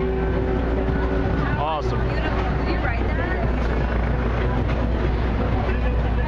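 Keyboard instrument holding a sustained chord that stops about a second and a half in. After it comes street noise: people talking over a steady traffic rumble.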